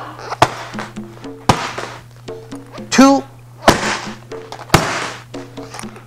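Rear hook kicks landing on a pair of Thai pads: several sharp slaps, the loudest two in the second half, over background music with a steady pattern of short notes.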